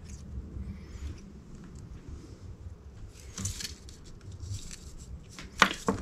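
Small brass and steel model steam-engine parts handled by hand: faint rustles and light clicks as the piston rod is worked into the piston, then a sharp click near the end as a part is set down on the bench, over a low steady hum.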